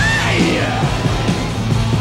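Hard rock band playing: distorted electric guitar over bass and drums in a steady beat, with a high note that bends and wavers near the start.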